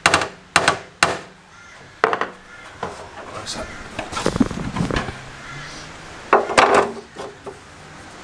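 Panel-beating hammer tapping on a dented car body panel, sharp metal strikes about two a second at first, knocking the high spots down to straighten the stretched sheet metal before filler. Quieter scraping and handling follow, then a short cluster of louder knocks about six and a half seconds in.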